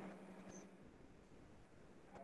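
Near silence with faint chalk writing on a blackboard, and one brief high chalk squeak about half a second in.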